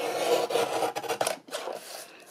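Paper trimmer cutting through a card panel: a scratchy rasp that lasts about a second and a half, briefly broken partway through.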